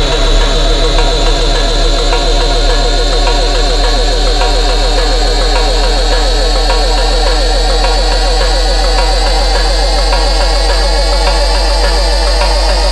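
Dubstep music: a steady deep sub-bass under a fast-rippling synth bass that climbs slowly in pitch.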